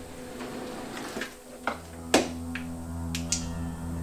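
A kitchen drawer pulled open and rummaged through: a series of small knocks and clicks, with one sharp knock about two seconds in and two quick clicks near the end as a flashlight comes out and goes on. A low, steady horror-film music drone runs underneath.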